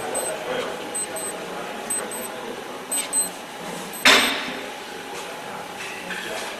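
Abstract IDM-style electronic track: a sparse, hazy bed with short high blips and small clicks, and one loud hit about four seconds in that rings out and fades over about a second.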